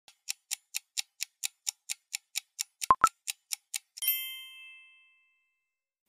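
Fast, even clock-like ticking, about four ticks a second, with two sharper clicks near the three-second mark. About four seconds in, a bell-like ding rings out and fades over about a second.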